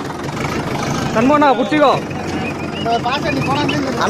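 Farm tractor's diesel engine running at idle, a steady low rumble under the voices.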